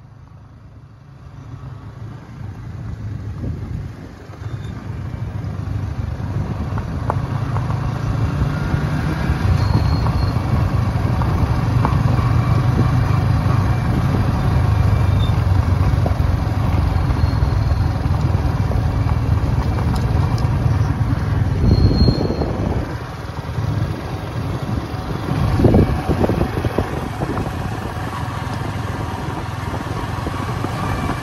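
Yamaha R15 V3 motorcycle ridden along a gravel track: engine and road noise rising over the first several seconds as it picks up speed, then holding steady, with two brief louder surges near the end.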